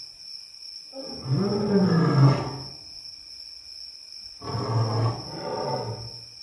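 A large animal growling three times: one long growl rising and falling in pitch, then two shorter ones close together near the end, over a steady high-pitched whine.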